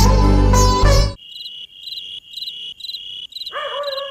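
Background music ends about a second in, and crickets then chirp in a steady rhythm, about two chirps a second. Near the end a held, wavering pitched tone joins the chirping.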